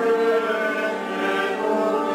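A choir singing sacred music in long, slowly changing held notes.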